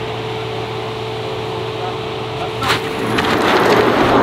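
A car launching hard from a standing start, a sharp burst of noise about three seconds in and the sound growing louder as it pulls away, with people's voices rising near the end.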